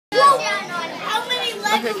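Speech only: children's high voices talking.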